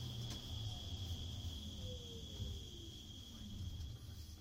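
A steady high-pitched whine, one thin tone held at a constant pitch over a low hum, fading out at the very end.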